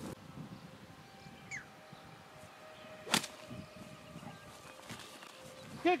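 A single sharp crack about three seconds in: a 60-degree wedge striking a golf ball, played from tall grass.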